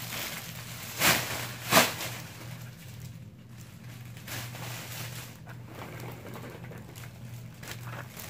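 Clear cellophane gift bag crinkling as it is handled and slipped over a basket: two sharp crackles about a second in and a little before two seconds, then softer scattered rustling.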